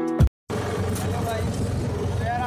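Background music cuts off abruptly. After a brief gap, a steady low engine and road rumble comes from inside a moving auto-rickshaw.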